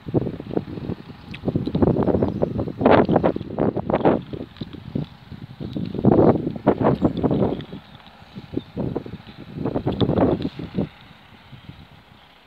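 Wind buffeting a phone's microphone in irregular gusts, dying down near the end.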